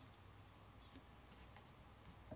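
Near silence, with a few faint clicks around the middle as strips of NZ flax (Phormium tenax) are folded and woven by hand.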